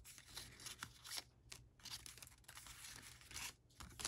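Faint rustling and light brushing of die-cut cardstock pieces as they are picked up and slid across one another, in a few short scattered strokes.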